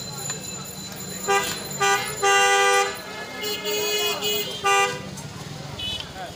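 Vehicle horns honking repeatedly in busy street traffic: short toots, then a longer blast about two and a half seconds in, a lower-pitched horn around four seconds, and another short toot near five seconds. Under them runs a steady low hum that stops near the end.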